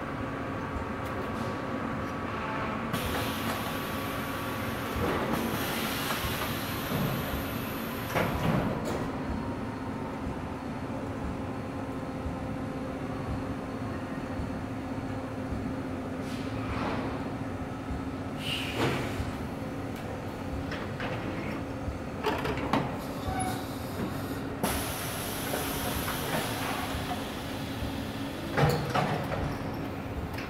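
Automated car-assembly rig lowering a car body onto its engine, drive shaft and suspension: a steady machine hum, with a long hiss of air a few seconds in and another near the end, and scattered clanks and knocks of the jigs.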